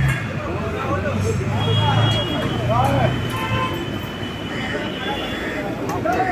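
Busy street noise: vehicle engines running, a horn held for about two seconds in the middle, and people talking.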